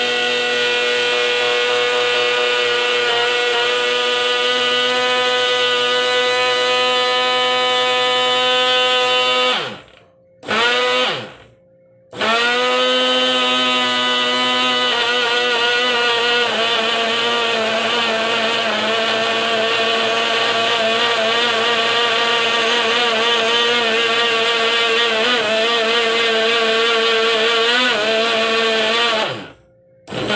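Countertop blender motor running with a steady high whine, blending a smoothie. About ten seconds in it winds down and stops, runs again for a moment, stops, then starts up again around twelve seconds. Near the end it winds down and stops once more.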